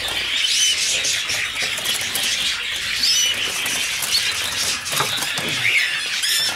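Many caged canaries and parrots chirping and twittering together without pause, with short high whistled chirps now and then and light clicks and rustles throughout.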